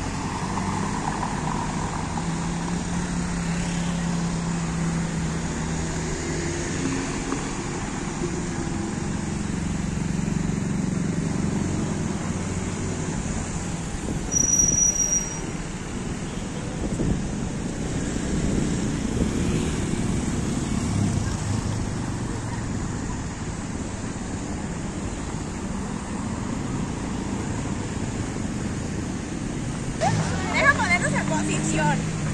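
Town street traffic: cars driving slowly past, their engines and tyres making a steady rumble that swells and fades. A brief high-pitched tone sounds about halfway through.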